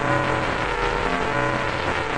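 Dense, distorted wall of layered electronic sound with many steady tones stacked over a low hum, a logo jingle warped by stacked audio effects.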